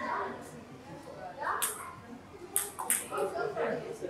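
Table tennis ball being struck by bats and bouncing on the table in a short rally: a few sharp clicks, the first about a second and a half in and the next ones closer together. Voices murmur in the room underneath.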